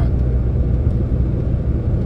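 Heavy truck driving on a highway, heard from inside the cab with the windows shut: a steady low engine and road rumble.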